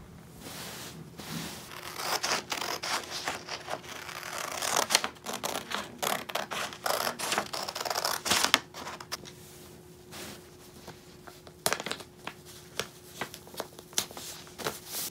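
Scissors cutting out a paper pattern, a run of crisp snips with paper rustling. Toward the end it turns to a few scattered rustles and clicks as the paper and fabric are handled.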